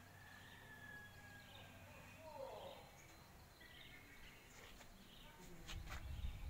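Quiet outdoor background with faint distant bird chirps, including one falling call about two and a half seconds in. A low rumble of the phone being handled comes in near the end.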